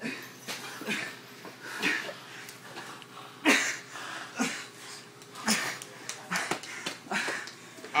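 Close-range wrestling scuffle: an irregular run of short rustling bursts and strained, heavy breaths as one wrestler is held in a choke.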